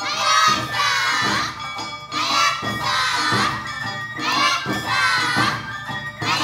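Awa Odori women dancers shouting their rhythmic calls (kakegoe) in unison, three high-pitched shouted phrases about two seconds apart, over the beat of the accompanying festival band's drums.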